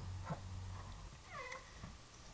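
A short, high, pitched cry about a second and a half in, dipping in pitch and then levelling off, over a faint steady low hum.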